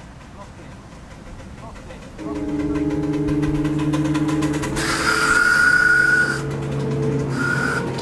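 Miniature steam locomotive whistle: a steady low tone comes in about two seconds in, then a shrill whistle with a hiss of steam blows for about a second and a half, followed by a short second toot near the end.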